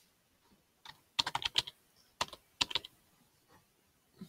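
Keystrokes on a computer keyboard typing a short word, in two quick runs of clicks, one about a second in and one about two seconds in.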